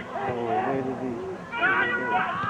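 People shouting drawn-out, wordless calls, with a louder, higher-pitched shout near the end.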